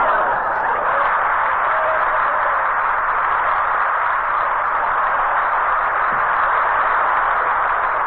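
Studio audience applauding, a steady, even clatter held at one level throughout.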